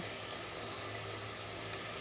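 Bottle gourd and potato curry sizzling and simmering in an aluminium pot on the stove, a steady even hiss with a faint low hum beneath it.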